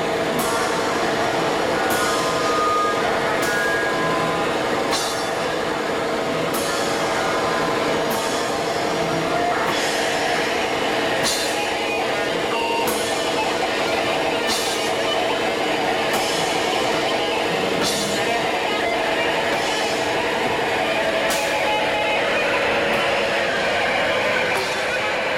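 Live noise-rock duo playing at full volume: a dense, droning wall of amplified sound with held tones under it, and drum-kit cymbal crashes about every second and a half.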